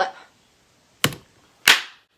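Two sharp hand smacks: a short one about a second in, then a louder one near the end that rings out briefly.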